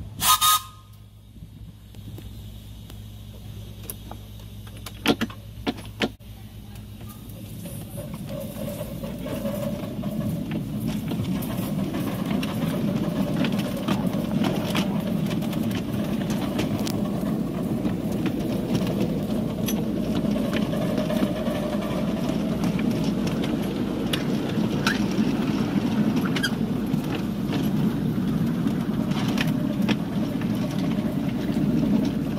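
Miniature steam railway train running along its track, heard from aboard. A short loud burst comes right at the start and a few sharp knocks about five to six seconds in. From about eight seconds in, a steady rumble of wheels on the rails grows louder as the train gathers speed.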